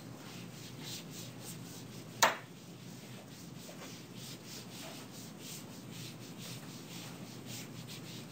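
Writing in quick, faint rubbing strokes, a few a second, with one sharp click about two seconds in.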